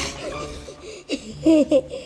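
Children laughing in a few short, high-pitched bursts of giggles, loudest about one and a half seconds in.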